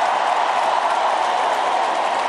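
A large crowd in an indoor arena applauding, a steady dense wash of clapping.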